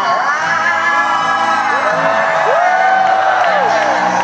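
Live acoustic rock band: two acoustic guitars strummed over a drum kit, with a man's voice holding long notes that rise and fall in pitch through the second half.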